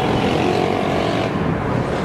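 Steady outdoor city noise: a continuous traffic rumble and hiss, with a faint held tone in the first second.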